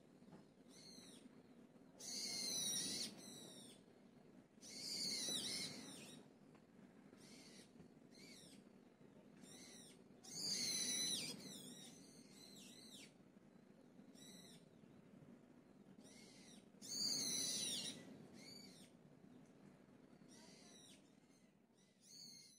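A songbird calling in short phrases of quick, high, down-sweeping chirps, a phrase every few seconds with faint single chirps between, over a soft low background hum.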